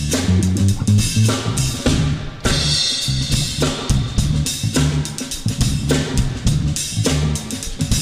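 Live band playing a funk dance groove: a drum kit with kick and snare on a steady beat over a bass line.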